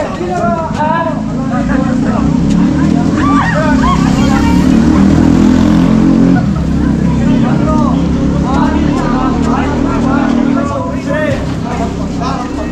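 A motor vehicle's engine running close by, loudest around the middle, under people's voices calling out.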